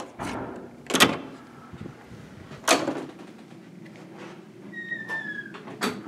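Hotel room door with an electronic keycard lock: a click as the lock releases, then sharp knocks of the handle and heavy door as it is opened and shut, and a brief falling squeak about five seconds in.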